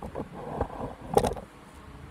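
Handling noise from hands working thin snare wire around a wooden stick: irregular rustling and scraping, with a sharp click a little over a second in, then quieter.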